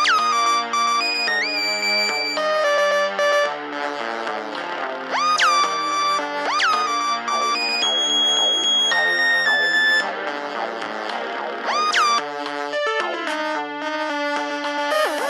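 Electronic music made in GarageBand: a synthesizer lead whose notes swoop up in pitch and then hold, coming back several times over layered chords, with no singing.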